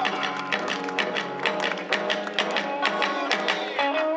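Kawachi ondo band accompaniment without vocals: an electric guitar playing a running melody over quick, steady strokes on a taiko drum.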